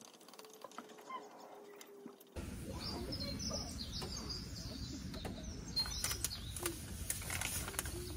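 Birds chirping over outdoor background noise that rises suddenly about two seconds in, with a few sharp clicks of cookware and chopsticks being handled on the table.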